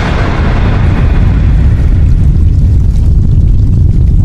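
Cinematic explosion sound effect in its tail: a loud, steady low rumble while the hiss of the blast fades away.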